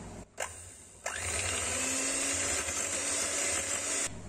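Electric hand mixer switched on after a click, running steadily from about a second in, its beaters whipping cold milk and chantilly powder into whipped cream in a glass bowl.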